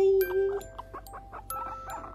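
Light background music of plucked notes. In the first half second there is a short, held vocal sound at a steady pitch.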